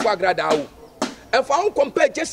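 A man speaking in an animated voice, with a brief pause about halfway through.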